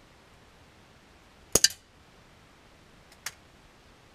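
Daisy PowerLine 901 multi-pump pneumatic air rifle firing one shot: a sharp crack with a second crack a tenth of a second after it, then a single fainter click near the end.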